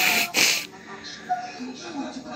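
Telenovela dialogue from a television: a woman's voice speaking in Portuguese, heard through the TV's speaker in a room, with two short hissing bursts near the start.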